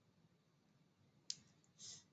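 Near silence, broken by a single sharp click a little over a second in and a brief soft rustle near the end.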